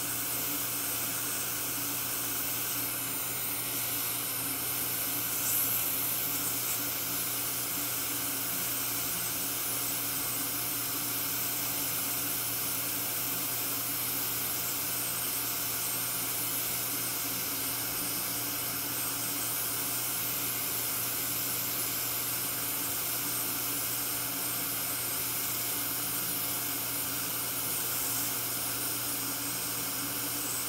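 Steady hiss with a faint machine hum from running dental equipment during diode-laser surgery on the gum, unchanging throughout.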